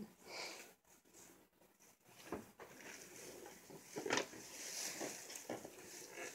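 Paper piñata rustling and crackling as a cat claws and tears at it and its tissue-paper streamers, in irregular bursts with the sharpest crackle about four seconds in.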